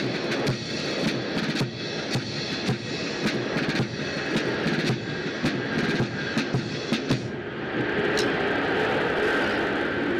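Military band music with sharp beats through the first seven seconds. About seven seconds in, the steady engine noise of an aircraft comes up under it.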